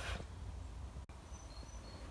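Quiet workshop room tone: a low steady hum and faint hiss, with faint thin high-pitched tones in the second half.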